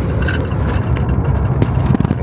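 A moving vehicle's engine and road noise, a steady low drone, heard from inside the cab while driving at speed along a highway.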